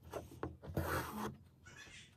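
Embroidery floss being drawn through taut fabric in an embroidery hoop: a couple of light taps, then a rasping rub about three-quarters of a second in that lasts about half a second.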